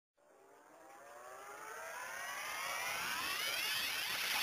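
Electronic riser opening a remix track: a cluster of tones gliding steadily upward in pitch while swelling from faint to loud.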